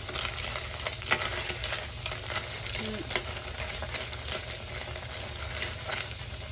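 A spoon stirring a pot of boiling soup with snails in their shells: a steady bubbling with scattered clicks and knocks throughout.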